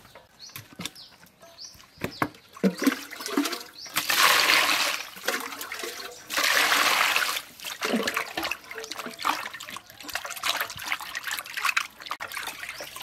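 Water gushing into a steel bowl of raw pig legs in two loud spells about a second long each, with hands splashing and swishing the pig legs in the water around them as they are washed.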